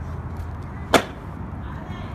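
A stunt scooter landing a flat trick on asphalt: one sharp clack of the deck and wheels hitting the ground about a second in.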